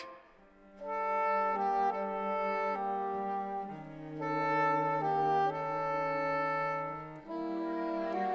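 Theatre orchestra playing slow, sustained chords, led by wind instruments, with the harmony shifting every second or so. It comes in about a second in after a brief hush.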